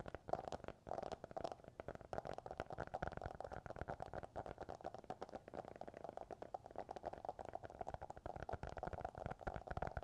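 Fingertips and fingernails tapping rapidly on the hardcover of a children's picture book, mixed with tapping on a second, black object, giving a dense, continuous stream of quick taps.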